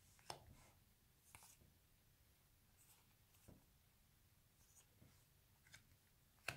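Near silence, with a few faint, short ticks and slides of trading cards being handled and flipped through a stack.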